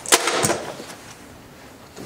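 A short rattle and clatter of go stones in a box as a hand grabs them, about half a second long near the start, then quiet.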